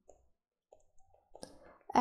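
Near silence broken by a few faint, short clicks, the sharpest about one and a half seconds in.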